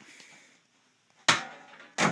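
A thrown rubber ball strikes something hard with a single sharp knock just past a second in, which dies away over about half a second.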